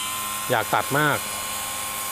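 OSUKA OCGT407 cordless brush cutter's brushless motor running at full speed with a steady whine, having just spun up.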